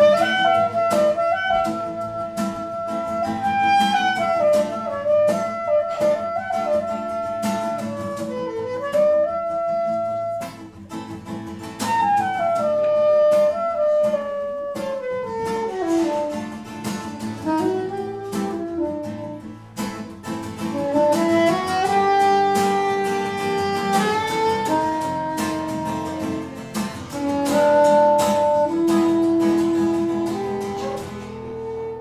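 Saxophone playing a jazz melody over acoustic guitar accompaniment. The line moves in phrases of held notes, with a long falling run near the middle that climbs back up.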